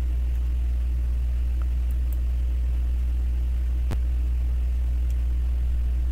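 Steady low hum with a few faint tones above it, running without change. A single sharp mouse click sounds about four seconds in.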